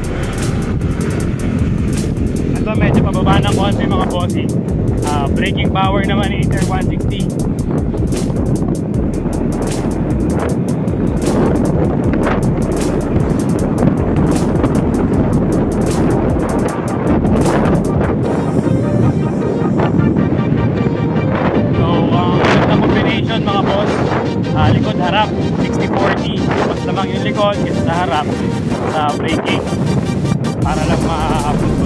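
Steady riding noise from a QJMotor ATR160 scooter: its 160 cc single-cylinder engine running, with wind on the microphone, mixed under background music that has a singing voice.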